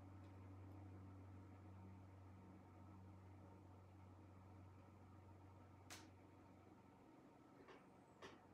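Near silence: room tone with a steady low hum and a single faint click about six seconds in.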